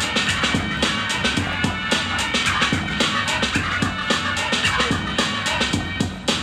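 Breakbeat music with a steady, punchy drum beat, the dance track for a breaking round.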